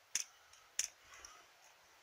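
Two faint, sharp clicks about two-thirds of a second apart, then a softer bit of handling noise.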